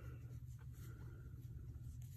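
Faint rustling of yarn and a crochet hook as a double crochet stitch is worked, over a low steady hum.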